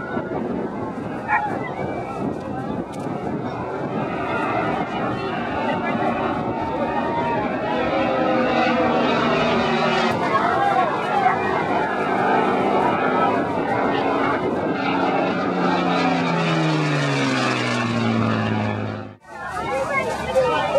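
Piston-engined propeller warbird of the Battle of Britain Memorial Flight passing overhead, its engine drone falling steadily in pitch through the second half as it goes by and away. Onlookers' voices are mixed in, and the sound breaks off abruptly near the end.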